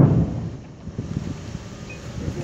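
A sudden heavy low thump that dies away over about half a second, followed by uneven low rumbling noise.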